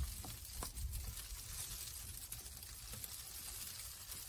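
Faint, steady background noise with a low rumble and a few soft ticks.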